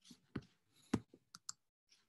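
Quiet, irregular sharp clicks and small knocks, about five of them, the loudest about a second in.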